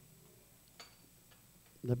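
Near silence: room tone in a pause between words, with a few faint clicks. A man starts speaking near the end.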